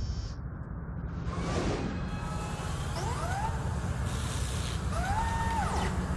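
Electronic sound design of a TV show's closing sequence: a steady low rumble, a whoosh about a second and a half in, and rising synthetic sweeps twice, near the middle and again near the end.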